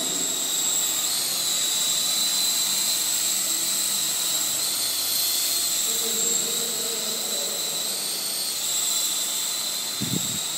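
Small electric Sky King RC helicopter in flight: a steady high-pitched whine from its motor and spinning rotor blades, its pitch shifting slightly a few times as the helicopter climbs and manoeuvres.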